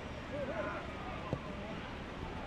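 Football pitch ambience: distant shouts and calls of players, with one sharp knock of a football being kicked a little past halfway.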